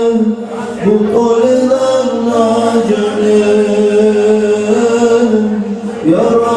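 Men's voices chanting a devotional song in unison through microphones and a PA, on long held notes that step in pitch, with a short break about half a second in and again just before the end.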